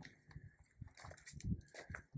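Faint footsteps on gravel: a few uneven steps, the firmest about one and a half seconds in.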